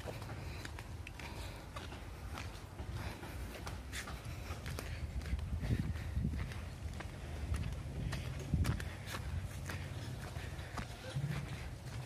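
Footsteps of a person walking at a steady pace on a dirt and grass path, over a low steady rumble.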